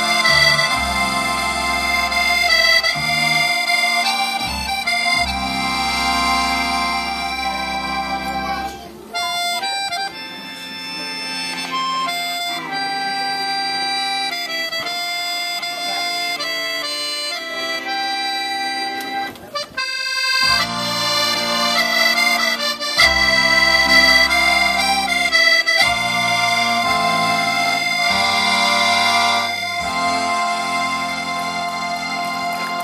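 Scottish traditional music led by accordion, with sustained chords and a running melody. It drops out briefly about nine seconds in and again about twenty seconds in.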